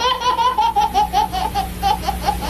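Baby laughing hard in a quick, steady run of high-pitched laughs, about five a second.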